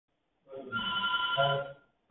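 A steady high electronic tone of a few pitches held for about a second, with a man's brief "So" near its end.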